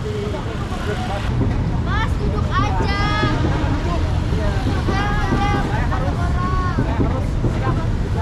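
Street traffic with motorbike engines passing, a steady low rumble, under short bursts of people talking in Indonesian.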